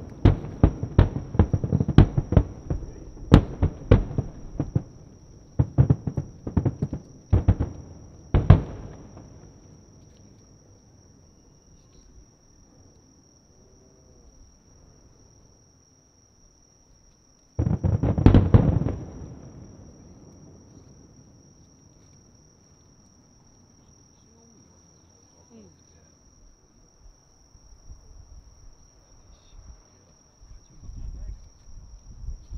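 Aerial firework shells bursting in quick succession, many sharp booms close together for the first eight or nine seconds, thinning out and fading away. About eighteen seconds in, one more loud boom rumbles on for about two seconds. A steady high insect trill runs under it all.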